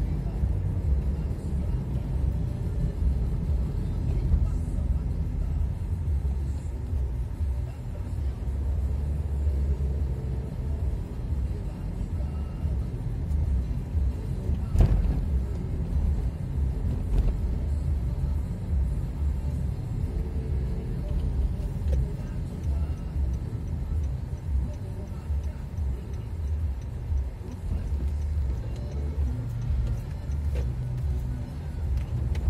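Steady low rumble of a car driving on a town road, heard from inside the cabin, with one sharp knock about halfway through.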